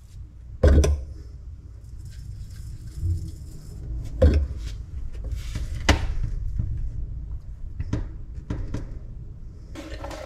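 Handling knocks and light clinks of PVC plumbing work: a metal-lidded can of PVC cement and its applicator being handled, and a PVC adapter pushed onto an inch-and-a-half drain pipe. Sharp knocks come about a second in, around four seconds and near six seconds, with fainter taps in between.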